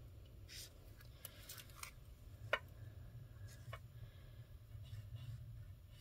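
Faint strokes of a foam brush-tip pen drawn across cardstock while lettering, a few soft scratches spread irregularly over a low steady hum.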